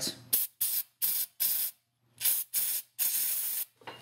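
Aerosol can of brake cleaner spraying in about eight short bursts, the last one longer, hosing down an ABS wheel-speed sensor at the axle hub to loosen the crud around it.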